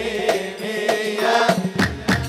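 Live Middle Eastern dance music: a large double-headed tabl drum struck in loud strokes under a sustained, wavering melody line.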